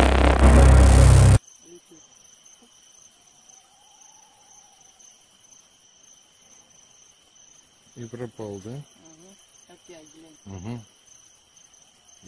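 Music that cuts off suddenly about a second in, followed by a steady, high-pitched cricket trill at night that carries on, with a few spoken words near the end.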